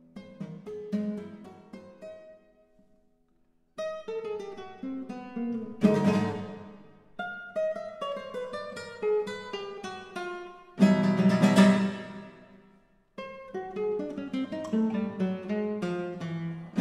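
Acoustic guitar playing a contemporary classical piece: plucked single notes and arpeggios that die away, broken by two short pauses. Loud strummed chords come about six seconds in and again about eleven seconds in.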